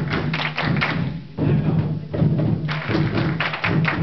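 A large group playing djembes and other hand drums together: dense, overlapping strokes that come in surges, with a short lull a little over a second in.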